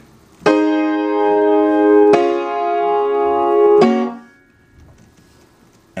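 Keyboard playing three held chords, the last chords of a song's hook: the first about half a second in, the second at about two seconds, and a short third just before four seconds that then dies away.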